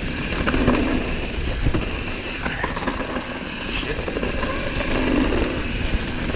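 Mountain bike riding down a dirt trail, heard from a camera on the bike or rider: tyres on dirt and the bike rattling over bumps, with wind on the microphone and a few sharp knocks from hits.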